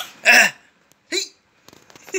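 A baby making two short vocal bursts: a loud, breathy one near the start and a brief squeak that falls in pitch about a second in.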